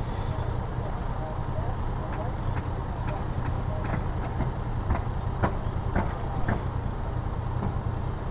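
Yamaha Tracer 900's three-cylinder engine idling steadily at a standstill, with a few light clicks.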